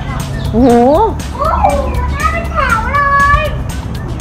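Children's high-pitched voices calling out, over background music with a steady quick beat.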